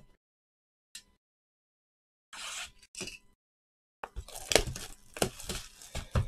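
Clear plastic shrink wrap being torn and crinkled off a trading-card hobby box: two short rips about two and a half seconds in, then steady crinkling and crackling from about four seconds on.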